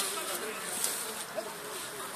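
Quiet outdoor background after the shouting stops: a steady high hiss with faint, distant voices and a couple of small ticks.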